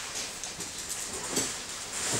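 A pause in speech: steady room hiss, with a faint short breath or murmur from the speaker about a second and a half in.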